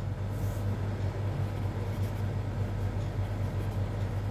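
Steady low hum with an even rumble of background noise, unchanging throughout.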